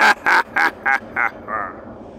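A person laughing: a run of about six short "ha" bursts, three or four a second, getting weaker and trailing off before the end.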